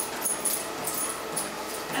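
Treadmill running at a walking pace: steady belt and motor noise with a high thin whine, and footfalls on the belt at a regular walking rhythm.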